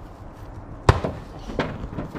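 A thrown ball hits the wooden target stand with one sharp knock about a second in, followed by a lighter knock just over half a second later; no pin is knocked down.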